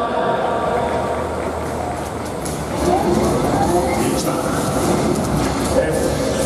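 Ballpark public-address audio for the starting-lineup introduction, a steady din echoing through the domed stadium, mixed with crowd chatter.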